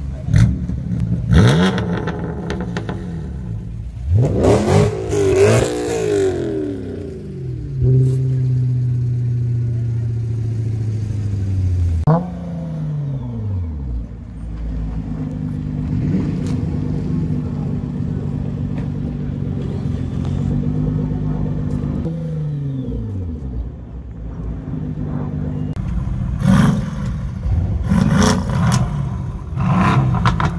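Several sports-car engines in turn, revving and idling. A BMW M4 gives sharp rev blips that rise and fall in pitch, followed by stretches of steady idle, including a Nissan GT-R's, that drop in pitch as the revs fall. Near the end comes a run of quick revs as a Mercedes-AMG GT's exhaust smokes.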